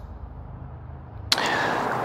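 Workshop room tone: a low steady hum, then about two-thirds of the way in a sudden, louder steady hiss.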